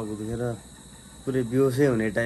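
A man's voice in two short stretches with a pause of about half a second between them, over the steady high chirring of crickets.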